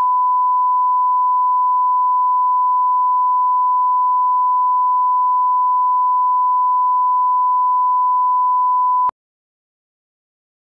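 Steady 1 kHz reference test tone, the line-up tone that accompanies broadcast colour bars, holding one pitch and cutting off abruptly about nine seconds in.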